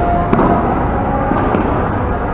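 A sharp crack about a third of a second in and a weaker one about a second later, over a loud steady din with a few held tones.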